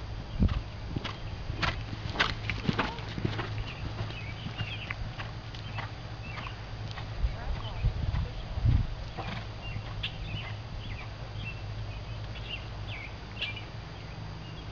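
Horse's hooves striking the sand of a riding arena at a trot, a run of dull thuds loudest in the first few seconds as the horse comes close, then fainter.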